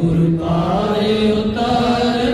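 Voices chanting a devotional chant in long, held notes that glide from pitch to pitch, with a new, higher phrase about one and a half seconds in.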